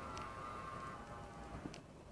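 Subaru Outback's electric door-mirror fold motor whining faintly and steadily as the mirror folds in, triggered automatically by locking the doors through an added mirror-folding module. The whine stops about three-quarters of the way through.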